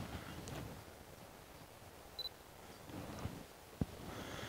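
Camera shutter clicking faintly a few times as pictures are taken, with a short high beep about halfway through and the sharpest click near the end.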